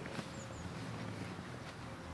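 Quiet handling of a fabric tennis kit bag's small pocket as a hand rummages in it and draws out a small bottle, with a few faint light knocks near the start over low outdoor background.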